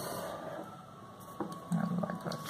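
Felt-tip marker scratching across paper while drawing a line, stopping about half a second in. It is followed by a sharp tap and a short low hum near the end.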